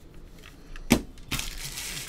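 A trading card being handled and set down: one sharp tap about a second in, followed by about half a second of crinkly rustling.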